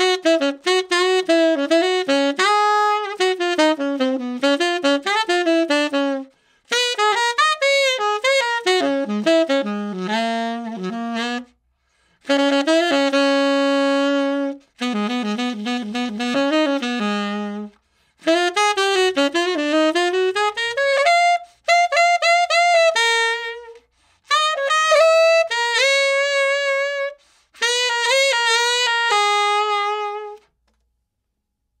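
Tenor saxophone played solo and unaccompanied on a refaced Florida Otto Link Super Tone Master 7* 100 Year Anniversary metal mouthpiece: a jazz line of running notes in a series of phrases, each broken off by a short pause for breath.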